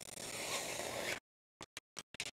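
Protective plastic film being peeled off a spring-steel build plate: a quiet, continuous rustling hiss for about a second, then a few short crinkles and ticks as the loose film is handled.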